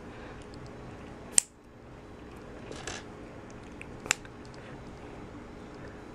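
Small plastic Kre-O building bricks being handled and pressed together: two sharp clicks, one about a second and a half in and one about four seconds in, with a softer plastic scrape between them.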